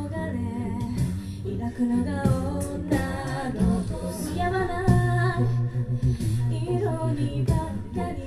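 A cappella vocal group singing live: a woman's lead voice over sung backing harmonies and a deep, sustained bass voice.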